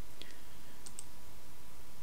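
Computer mouse clicking: one faint click just after the start and a quick pair of clicks about a second in, over steady low background noise.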